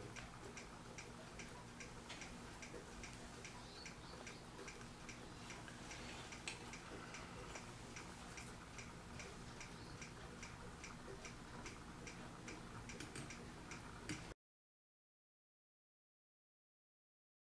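Faint, even ticking of a mechanical clock that runs steadily, then cuts off suddenly near the end.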